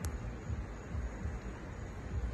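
Quiet outdoor background: a low, uneven rumble under a faint hiss, with a single sharp click right at the start.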